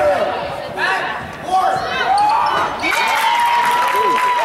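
Basketball bouncing on a hardwood gym floor during play, with spectators' voices and shouts echoing in the gym.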